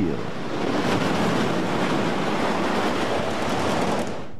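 Roller coaster train running on a wooden coaster's track: a loud, steady roar of wheels on the rails that cuts off abruptly near the end.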